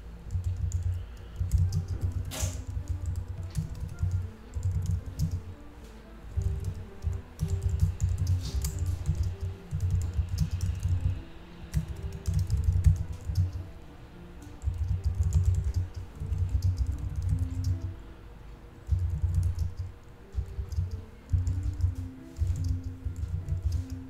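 Computer keyboard typing in bursts of a second or two, with short pauses between, the key strokes thudding heavily close to the microphone.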